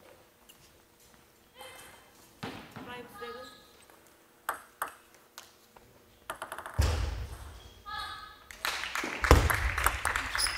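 Table tennis ball clicking sharply as it bounces, several separate clicks, with short shouted voices in the hall. Louder thuds and a denser burst of sound come near the end.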